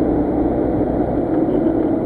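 Steady rumble of a car driving along the road, heard from inside the cabin.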